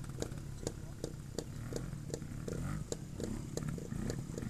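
Trials motorcycle engine idling, with a low steady hum and sharp regular pops about four times a second.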